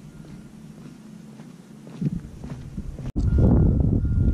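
Faint footsteps on a paved path against quiet outdoor air, with a low rumble building after about two seconds. A bit after three seconds the sound cuts, and loud wind buffeting the microphone takes over.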